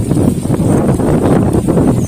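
Wind buffeting the microphone: a loud, rough, low rumble that fluctuates without any steady tone.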